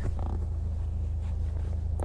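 VW Golf R Mk8's EA888 2.0-litre turbocharged four-cylinder idling, a steady low hum heard from inside the cabin.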